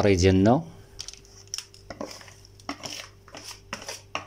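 Scattered light clinks and scrapes of a bowl and utensil against a metal baking tray as thick semolina batter is poured in and the bowl is scraped out, over a faint steady hum.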